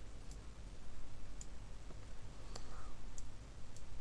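Computer mouse buttons clicking: about five separate, sparse clicks while nodes are dragged and connected.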